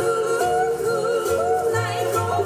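Hawaiian song for hula: a singing voice with a wavering vibrato over instrumental accompaniment and a steady, repeating bass line.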